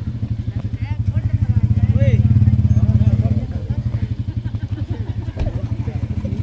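An engine running close by with a fast, even pulse, swelling louder about two seconds in and easing off again after three, with voices faintly behind it.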